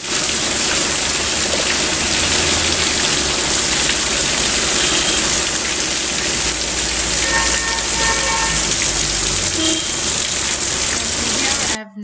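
Mountain stream splashing down over rocks in a small cascade: a steady, loud rush of water that cuts off abruptly near the end.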